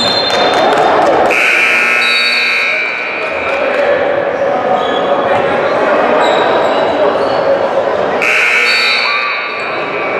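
Gym scoreboard buzzer sounding twice, about a second and a half each time, once a little after the start and again near the end. A basketball bounces on the hardwood floor early on.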